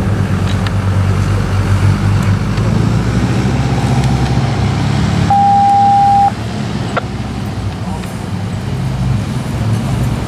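Steady low hum of an idling vehicle engine, with a single loud, pure, steady beep lasting about a second midway through.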